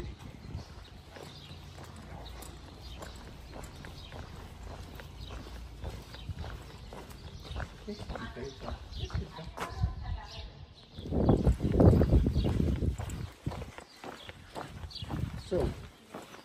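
Footsteps on a paved town street in a steady walking rhythm. A louder low rumble lasts about two seconds a little past the middle.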